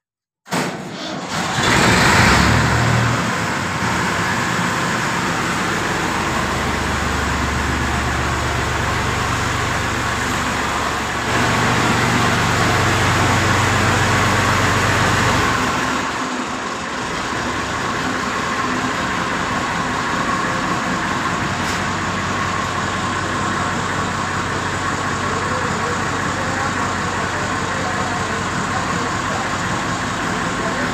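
Ford 4610 tractor's three-cylinder diesel engine running. It is revved higher from about 6 to 16 seconds, then settles back to a steady idle.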